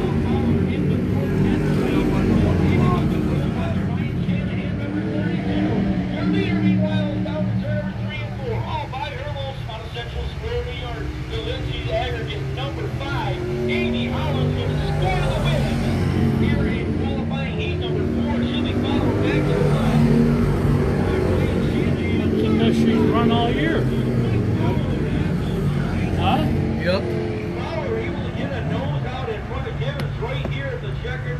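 Dirt-track modified race cars running around the oval, their engines blending into a steady low hum. Indistinct voices of nearby spectators talk over it.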